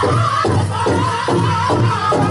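Powwow drum and singers: a large drum struck in a steady beat, about two to three strokes a second, under high, wavering group singing.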